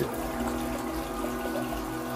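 Steady background hiss with several faint steady hum tones under it, unchanging through the pause.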